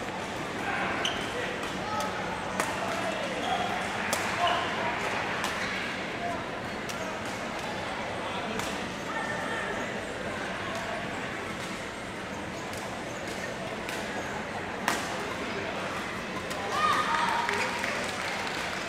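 Badminton rackets striking a shuttlecock: sharp cracks scattered through the rallies, the loudest about fifteen seconds in, over the murmur of voices in the hall.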